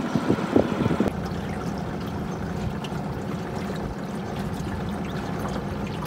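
Water splashing and lapping, then about a second in the steady hum of a dinghy's outboard motor running under way, with water rushing along the hull.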